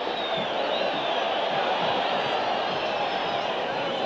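Large stadium crowd, a steady even din of many voices.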